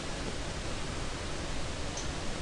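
Steady, even hiss of the recording's background noise, with nothing else sounding.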